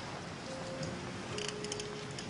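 Soft background music with long, steady held notes, and a brief cluster of light high ticks about one and a half seconds in.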